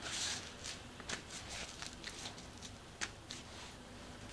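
Faint soft rustling of a damp tissue wipe being pressed and smoothed onto a face by hand, with a couple of brief light ticks about a second in and near three seconds.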